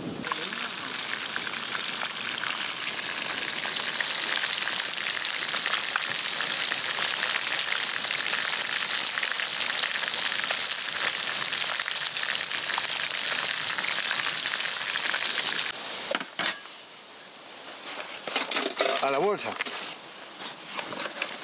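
Small whole fish deep-frying in hot oil in a disco pan over a wood fire: a steady, dense sizzle of bubbling oil. It stops abruptly about sixteen seconds in, leaving only a few faint clicks and handling noises.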